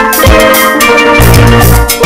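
Background music with drums and a pitched melody over bass notes, playing steadily.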